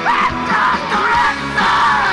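Rock band playing live: a yelled lead vocal over drums and amplified instruments.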